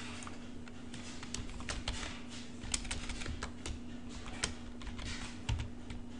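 Typing on a computer keyboard: an uneven run of individual keystrokes that begins about a second in and stops shortly before the end.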